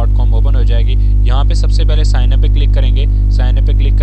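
Loud, steady electrical mains hum, a low drone with its overtones, carried through the recording under a man talking.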